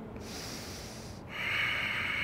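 A person breathing audibly close to the microphone: a soft breath, then a louder, longer breath starting a little over a second in.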